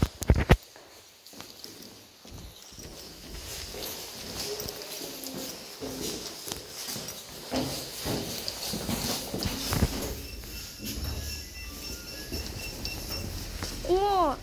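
Footsteps going down concrete stairs and onto a tiled floor, with a few sharp steps right at the start and then softer, uneven steps. Faint short high tones come in near the end.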